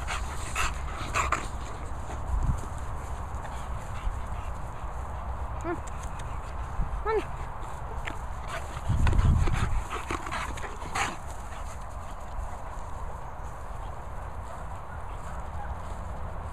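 A Bernese mountain dog and an English bulldog at rough play, with a few brief whines and scuffling, and a loud low rumbling burst about nine seconds in.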